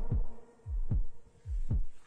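Heartbeat sound effect: deep, low thumps in pairs, each sliding down in pitch, three double beats in a row.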